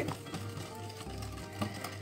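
Wire whisk stirring yogurt and sugar in a glass bowl, its wires clicking against the glass in quick irregular taps, over soft background music.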